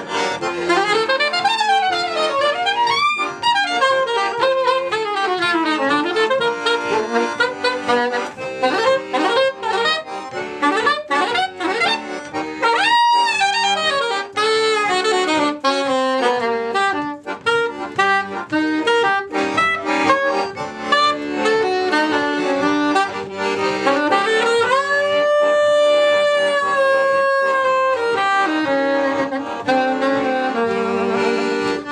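Soprano saxophone and piano accordion playing a bluesy tune together, with fast rising and falling runs and a long held note near the end.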